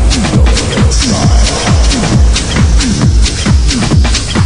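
Chicago house music from a DJ mix: a steady four-on-the-floor kick drum about twice a second, with hi-hats and a dense electronic backing.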